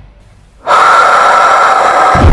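Quiet for the first half-second, then a sudden loud, breathy rush of air, like a forceful drawn breath, lasting a little over a second.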